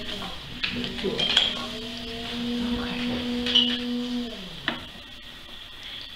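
Electric potter's wheel spinning while wet clay is worked by hand, with scattered light clicks and scrapes of hands and water on the clay. A long steady hum holds from about a second in and falls away after about four seconds.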